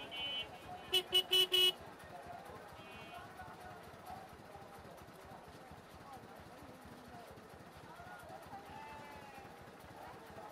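A vehicle horn sounds four short, loud beeps in quick succession about a second in, over the steady chatter of people and traffic noise of a crowded street.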